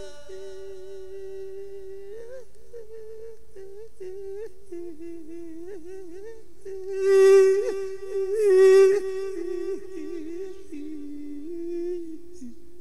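A male voice humming a long, slow melodic line into a microphone, the pitch wavering and bending around one held note, in the drawn-out melismatic style of Isan lae sermon singing. About seven seconds in, it swells twice into louder, open-voiced notes before settling back to the quiet hum.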